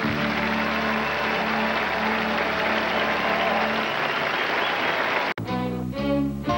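Audience applause as a vocal quartet's song ends, with a steady low tone under the clapping for the first few seconds. About five seconds in it cuts off abruptly, and acoustic guitar begins the next song.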